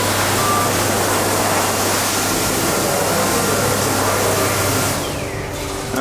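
Electric hand dryer blowing: a steady rushing hiss over a low motor hum, which fades with a falling whine about five seconds in as the motor winds down.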